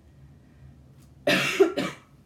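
A woman coughing into her fist: two coughs in quick succession, the first longer, starting a little past the middle.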